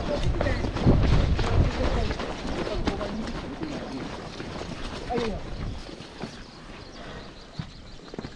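Boots running on a wet paved road, with gear rattling and a heavy low rumble of movement on the body-worn camera. It is loud at first and dies away over the first few seconds as the runners slow and stop. Short bits of voices can be heard in the background.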